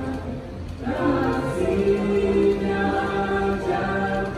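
A small family group of women's, girls' and a man's voices singing a praise song together through microphones. Held notes, with a short break between phrases just before a second in.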